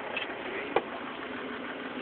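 The engine of a tracked trail-grooming tractor idling steadily, heard from inside its cab. There is a single short click about three quarters of a second in.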